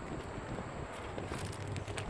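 Low outdoor background noise: wind rumbling on the microphone, with a few faint footsteps on gravel as the camera moves along the car.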